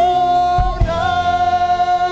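A man and a woman singing a duet over backing music, holding one long steady note together, with a couple of low drum hits just over half a second in.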